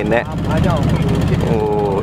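Boat engine running with a steady, low, pulsing drone under a man's speech.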